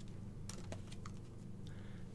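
Playing cards being dealt onto a felt table: a few faint, light taps, about four in two seconds, over a low steady hum.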